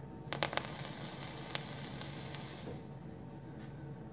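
E-liquid sizzling and crackling on a freshly built 0.11-ohm dual coil of 22-gauge 316L stainless steel wire as the mod is fired. A few sharp pops come near the start, one more at about a second and a half, and the sizzle dies away at about three seconds.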